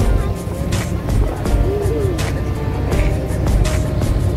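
Background music with a steady beat and a melody, over a low steady rumble.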